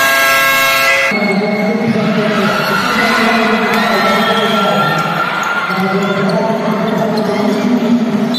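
Basketball bouncing on a gym floor amid crowd voices echoing in a large hall. A steady pitched tone sounds at the start and cuts off about a second in.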